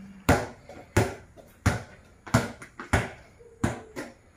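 A handball being dribbled on a tiled floor: six bounces at an even pace, about one every two-thirds of a second.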